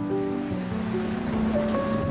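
Slow, soft instrumental music with held notes between sung lines of a ballad-style song.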